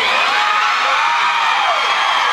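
Concert audience in a club cheering and whooping, many voices shouting at once.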